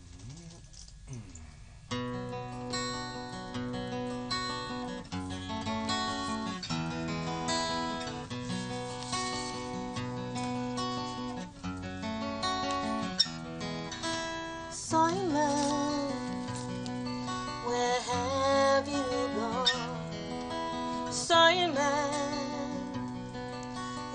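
Acoustic guitar playing a song's introduction, starting about two seconds in after a brief quiet moment. From about halfway, a woman's wordless singing with vibrato joins over the guitar.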